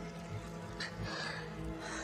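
Television drama soundtrack: a low, sustained music score with held tones, with two short breathy gasps from a character, about a second apart.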